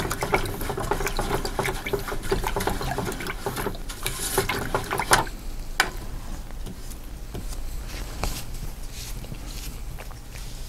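A paintbrush being swished and rinsed in a container of cleaning liquid, with a busy run of splashing and rattling for about five seconds. After that it goes quieter, with a few single sharp taps.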